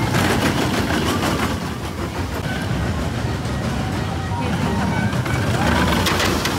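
Gadget's Go Coaster, a small family roller coaster, its train of acorn-shaped cars running along the steel track with a steady low rumble and clusters of clattering clicks near the start and the end.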